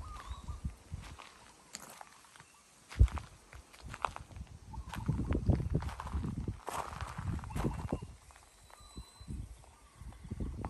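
Footsteps crunching irregularly on loose gravel, with one sharp knock about three seconds in.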